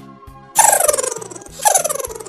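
Two loud cartoon sound effects, each a rapidly warbling tone that slides downward in pitch, about a second apart, over bouncy children's background music.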